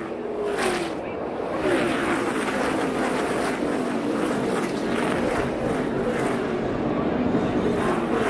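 Several NASCAR Xfinity Series stock cars' V8 engines running together as the field circles the track. Their pitches glide up and down as cars pass.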